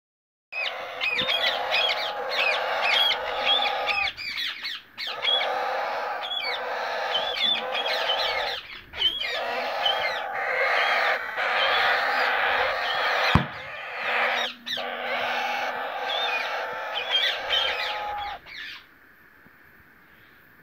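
A clutch of white Indian ringneck parrot chicks calling together: a harsh, hissing chorus in long stretches with brief breaks, with quick high chirps over it. One sharp knock comes about two-thirds of the way in, and the calling stops shortly before the end.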